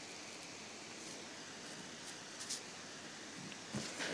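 Faint steady hiss of the recording's background noise, with a couple of faint short clicks, one about two and a half seconds in and one near the end.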